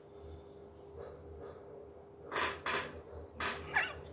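Perfume bottle's atomizer spraying: several short hissing sprays in the second half, a pair close together and then a few more just before the end, over a faint steady hum.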